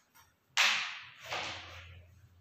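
Two sudden noises from things being handled on a table. The first, about half a second in, is the louder; the second comes just under a second later, and each fades away over about half a second.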